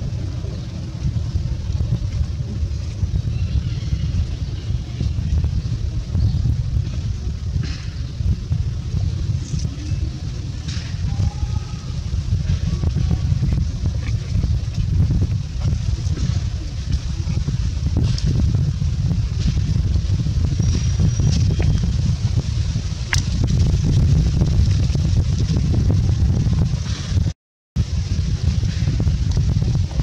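Low, fluctuating rumble of outdoor background noise, with a few faint clicks and short chirps and a brief cut-out near the end.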